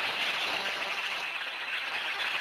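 Steady rushing hiss from a promotional video's soundtrack, with no clear tune, brightest in the upper range.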